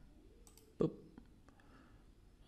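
A few faint computer mouse clicks, selecting an object on screen.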